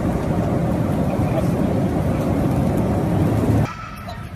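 Steady low rumble of a moving passenger vehicle heard from inside the cabin. It cuts off abruptly near the end, giving way to quieter, more open hall sound.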